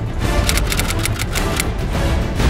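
Typewriter key-click sound effect: a quick run of sharp clicks in the first second and a half, over background music with a heavy bass.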